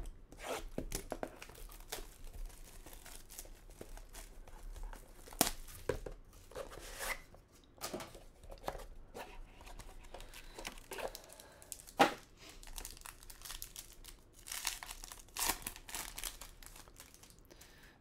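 Plastic shrink-wrap torn and crinkled off a sealed trading card box, with scattered crackles and handling of the box as it is opened. One sharp click about twelve seconds in is the loudest sound.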